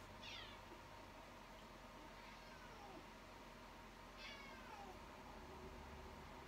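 A domestic cat meowing faintly, two short meows each falling in pitch, one just after the start and one about four seconds in.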